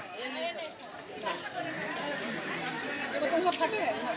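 Background chatter: several people talking at once at a moderate distance, with no other distinct sound.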